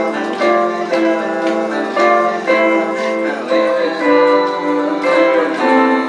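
An electric guitar and an acoustic guitar playing an instrumental passage together, picked notes over chords with a fresh attack about every half second.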